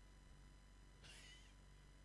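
Near silence: room tone in a pause of the amplified sermon, with one faint, short, wavering high-pitched cry about a second in.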